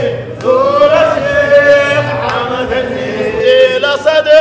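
Men chanting a Sufi dhikr together, the voices held on long sung phrases, with a short break just after the start.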